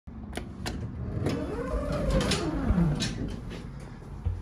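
Two sharp clicks as an elevator hall call button is pressed, then a whine that rises and falls in pitch over about a second and a half, among a few light knocks.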